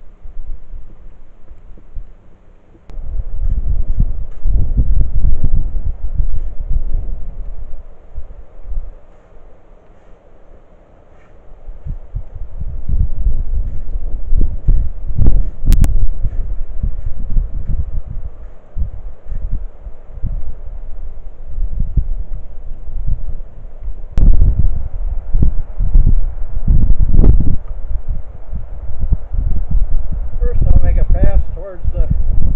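Gusty wind buffeting the microphone in low rumbling surges that rise and fall, with a few sharp knocks from a long-handled tool clearing snow from a miniature railway switch.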